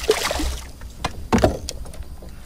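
Hooked bass thrashing at the surface beside a small plastic fishing boat: a few sharp, irregular splashes and knocks, the loudest about a second and a half in.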